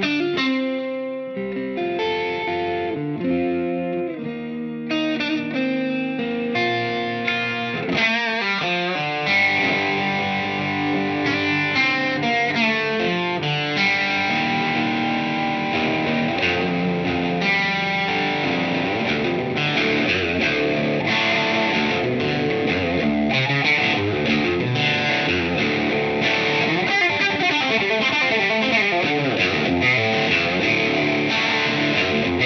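Fender American Professional II Telecaster electric guitar played through an amplifier. Separate chords with short gaps come first, then about 8 seconds in it turns to continuous, busier lead playing with bent and wavering notes.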